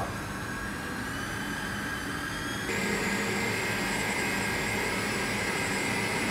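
Kenwood stand mixer motor running steadily while kneading pizza dough, a continuous whine. About two and a half seconds in its tone shifts and it gets slightly louder as the speed is turned up.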